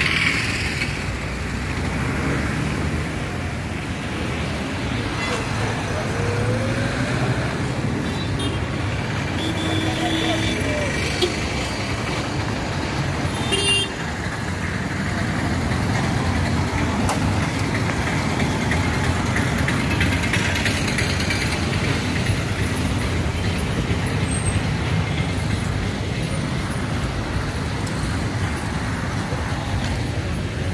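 Busy street traffic: auto-rickshaws and cars driving past, with a couple of short horn toots around the middle and voices of passers-by in the background.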